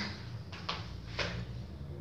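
Two faint clicks of glass kitchen bowls being handled on the counter, over a low steady hum.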